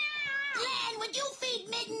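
Hairless cat yowling: one long, drawn-out meow that holds its pitch, drops about half a second in, and then goes on wavering lower.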